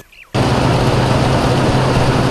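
A threshing machine running steadily: a loud, even rush of noise over a low, constant hum. It cuts in suddenly about a third of a second in.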